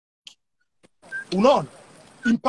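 About a second of silence, then a person's voice: a short drawn-out vocal sound that rises and falls in pitch, running into speech.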